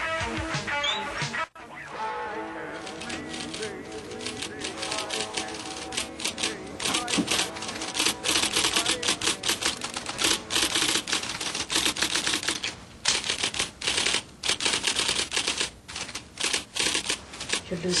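Typewriter typing in quick, irregular runs of keystrokes, building up from about six seconds in and getting louder, with a couple of short pauses. It is a recording of typing played back from a tape recorder. Music cuts out in the first couple of seconds.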